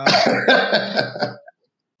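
A man laughing heartily in breathy bursts, about four a second, which cut off suddenly about a second and a half in.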